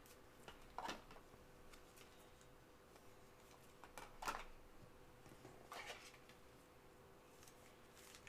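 Near silence, broken three times by faint brief rustles of a trading card being handled in gloved hands, over a faint steady hum.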